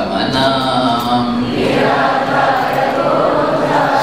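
A man's voice singing a line of a Hindi devotional bhajan, then, from about a second and a half in, a congregation of many voices singing the response together in unison.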